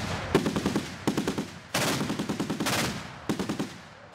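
Automatic weapons fire: several bursts of rapid shots in quick succession, the live fire of a battle-inoculation exercise. The bursts stop shortly before the end.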